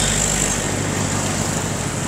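Street traffic: a vehicle engine running steadily nearby with general road noise.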